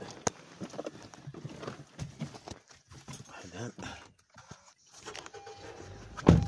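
Irregular knocks and clicks with rustling, as someone climbs into a car seat handling the phone; a sharp click comes about a third of a second in.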